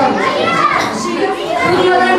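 Children's voices: a child speaking amid the chatter of other children, with hall echo.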